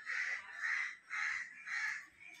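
A crow cawing four times in a quick series, about two harsh calls a second.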